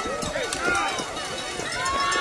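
Background voices of spectators calling out as a pack of children on cross-country skis shuffles off from a mass start, skis and poles scuffing the snow.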